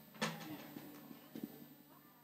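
A sharp knock about a quarter second in and a softer one later, with faint low voices between them in an otherwise quiet room.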